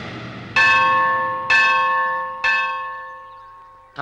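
Temple bell struck three times, about a second apart, each stroke ringing out on a clear, steady pitch and slowly fading.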